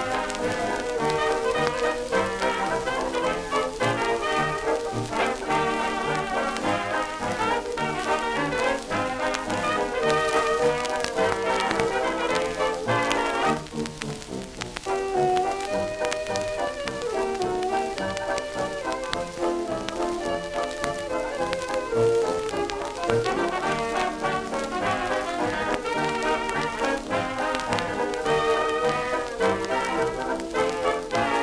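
A 1920s jazz dance band playing an instrumental passage from a 1928 Banner 78 rpm shellac record, with crackle and hiss from the record surface under the music. There is a brief lull about halfway through before the next strain.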